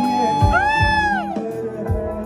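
Live concert music played loud through a PA: two long sung notes, each sliding up, holding and falling away, over a band with deep drum beats.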